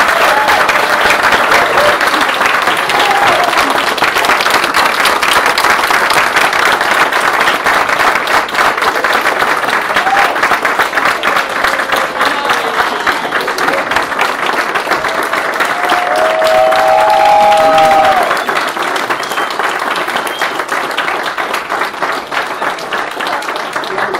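A roomful of people applauding, loud and steady, with a few voices calling out a cheer about two-thirds of the way through; the clapping thins out over the last several seconds.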